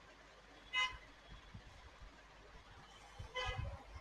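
A distant vehicle horn sounding two short toots about two and a half seconds apart, the second a little longer, over a faint steady background hiss.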